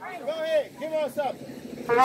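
A raised voice calling out in short rising-and-falling phrases. Just before the end, a street brass band's trumpets strike up with held notes.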